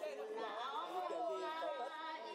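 An elderly woman's voice amplified through a handheld microphone, with other people's chatter behind it.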